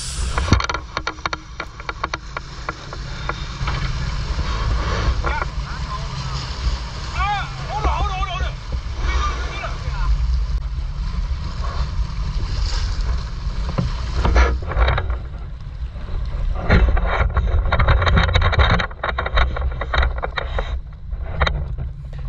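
Boat under way at trolling speed: a steady low engine rumble and water rushing along the hull, with wind buffeting the microphone. In the last several seconds, short clicks and knocks come through as a hooked fish is brought alongside and handled.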